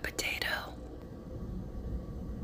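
A person whispering the last words of a short phrase in the first moment, then a low steady hum.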